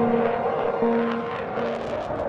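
Fighter jet flying past overhead, a steady rushing jet noise, mixed with background music holding low sustained notes.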